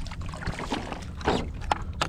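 Water splashing and dripping as a small hooked fish is swung out of the water beside a kayak, over a steady low rumble of wind on the microphone, with a soft splash about a second in.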